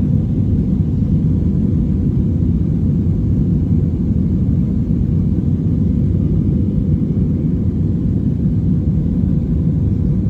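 Steady low rumble of an Airbus A321's engines and rushing air, heard inside the passenger cabin as the jet climbs out after takeoff.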